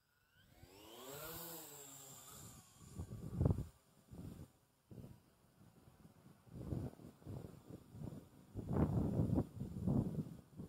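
Brushed motors of a Kmart Stunt X8 quadcopter, a Syma X8 clone, spooling up as it lifts off: a whine that rises and eases back over the first couple of seconds. After that, gusts of wind buffet the microphone, the loudest a few seconds in and near the end.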